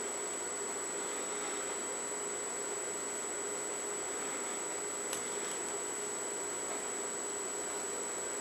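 Steady room tone: an even hiss with a faint high whine and a low hum. There is a single faint click about five seconds in.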